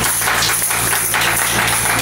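Loud live music with rhythmic percussive strikes over a low steady hum.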